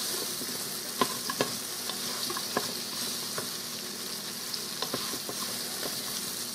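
Onion and celery sizzling in oil in a pressure cooker's inner pot, with a wooden spoon stirring and scraping the bottom to loosen browned bits of roast drippings. The sizzle runs steadily, broken by a sharp knock of the spoon against the pot about once a second.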